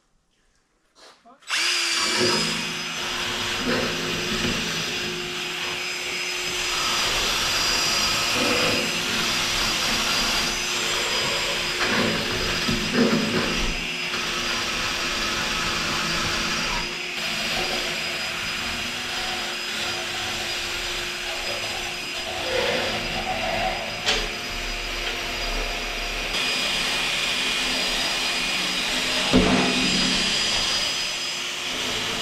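Angle grinder running with a steady high whine, its disc grinding against the steel of a diamond-plate top, starting abruptly about a second and a half in.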